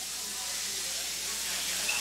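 Steady hiss of the recording's background noise and room tone, with no other sound.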